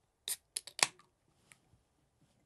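Pull tab of an aluminium beer can being levered open: a short burst followed by a quick run of sharp clicks and snaps, the loudest just before a second in.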